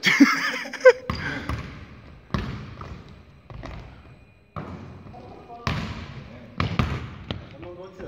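A basketball bouncing on a hardwood gym floor: separate sharp bounces about a second apart, each ringing on in the large hall.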